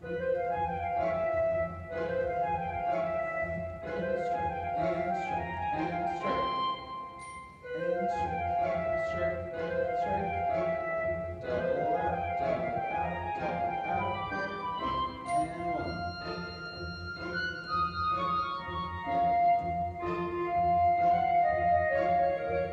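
Classical instrumental music playing: held melody notes over an accompaniment, with a short drop in level about seven and a half seconds in.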